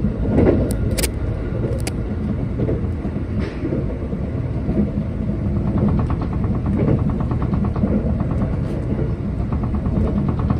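Running noise of a JR East E257 series electric train heard inside the carriage: a steady rumble of wheels on rail at speed, with a few sharp clicks about a second in. From about six seconds in a rapid, even ticking joins the rumble.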